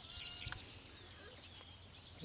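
Faint bird chirps and calls, with one sharp click about half a second in.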